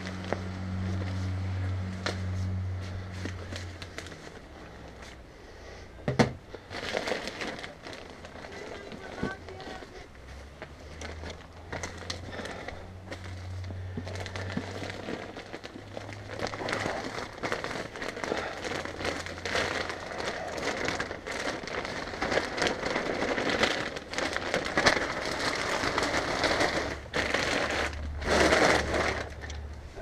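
Plastic bag of peat-based potting mix crinkling and rustling as it is handled and tipped, with the loose mix shaking and pouring out into a plastic pool. There is one sharp knock about six seconds in, and the pouring and rustling grow denser in the second half.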